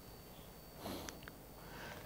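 Quiet room tone in a pause, with a person's short sniff or inhale about a second in, followed by a couple of faint clicks.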